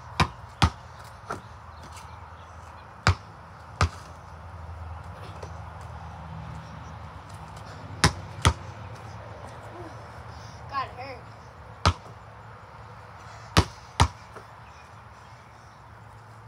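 Basketball bouncing on a concrete driveway: about ten sharp, separate bounces, several in quick pairs about half a second apart, with gaps of a few seconds between.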